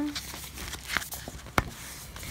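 Paper pages of a notebook being leafed through by hand, soft rustling and handling noise, with a sharp tap about one and a half seconds in.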